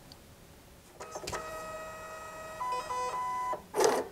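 Label printer feeding out a printed label: a steady motor whine starts about a second in, shifts pitch partway through and stops. A short, loud clack near the end is the label being cut.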